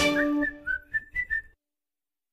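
The closing phrase of a background music track: a few short whistled notes that hop up and down in pitch, then cut off suddenly about a second and a half in.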